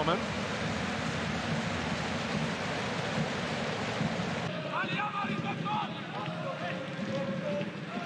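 Stadium crowd noise from a football match broadcast: a steady, even crowd sound that drops to a quieter crowd with faint voices about four and a half seconds in.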